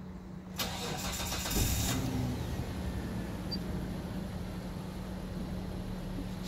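2001 Mitsubishi Pajero engine cranked by the starter for about a second, catching and settling into a steady idle, heard from inside the cabin.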